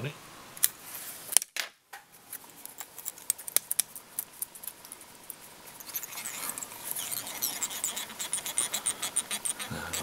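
Light clicks and ticks of fly-tying handwork at close range: a metal bobbin holder and tying thread being handled and wrapped around the hook shank. One sharp click comes about a second and a half in, and the ticking gets quicker and denser over the last few seconds.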